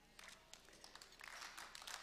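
Near silence: faint room tone with light, scattered ticks.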